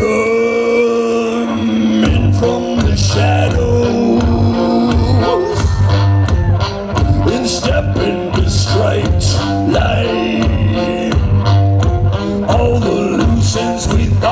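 Live music from the Magic Pipe, a homemade instrument of steel plumbing pipe strung with a bass string. It opens with a held note for about two seconds, then moves into a pulsing bass line with sharp percussive hits on a steady beat.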